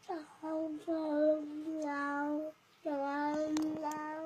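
A small child's voice singing out long, steady held notes: one lasting about two and a half seconds, a brief break, then another held note at the same pitch.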